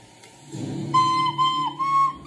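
A plastic recorder playing three short held notes from about a second in, the last a little higher than the first two. A low hum runs underneath from about half a second in.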